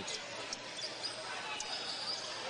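Steady crowd noise in a basketball arena, with a basketball bouncing on the court.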